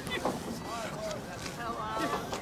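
Wind rumbling on the microphone, with distant voices calling out several times.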